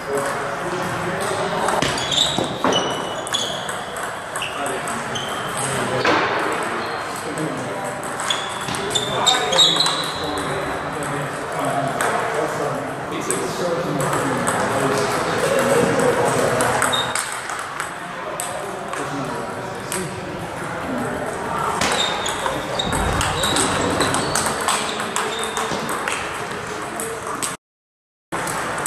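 Celluloid-style table tennis ball clicking off paddles and the table in rallies, each hit a sharp tick with a short ringing ping, over a steady babble of voices in the hall. The sound cuts out for a moment near the end.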